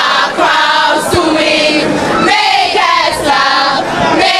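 A large group of teenage schoolgirls singing loudly together in unison, a rousing group song with many voices at once.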